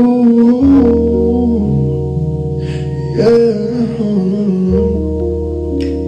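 A man singing a wordless melody into a microphone in two phrases, over held keyboard chords with a deep bass note; the chords change a few times.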